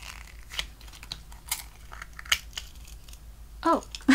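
Small sharp plastic clicks and light scraping, several scattered ticks, as a miniature plastic bento-box toy is handled and its cardboard sleeve and lid come off.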